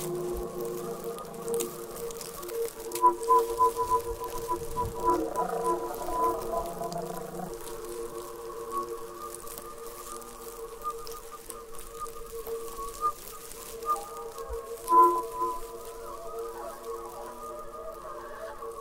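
Flute music in long held tones, several sounding together as a steady drone, with a flicker of short, higher repeated notes about three seconds in and again around fifteen seconds.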